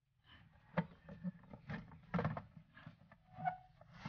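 Plastic control panel of a Eureka twin-tub washing machine being lifted off by hand: a scattering of sharp plastic clicks and knocks, the loudest about a second in and another just after two seconds.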